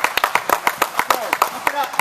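Scattered hand clapping from several people, many quick irregular claps, with voices calling over it.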